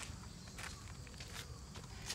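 Faint shoe scuffs and footsteps on asphalt as a football is moved about underfoot: a few soft, short scrapes over a steady low rumble.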